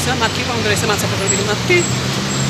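A woman talking over a steady low engine hum from street traffic.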